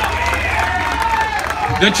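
A large outdoor crowd cheering and applauding, with scattered shouts and whoops. Near the end a man starts speaking over the public-address system.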